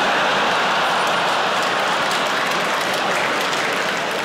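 Large theatre audience laughing and applauding, a steady mass of clapping and laughter that eases slightly near the end.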